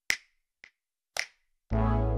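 Channel intro jingle: three finger snaps about half a second apart, then music with a deep bass comes in near the end, the snaps keeping the beat.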